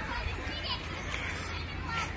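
Children playing in a schoolyard, their voices faint and distant, over a steady low rumble.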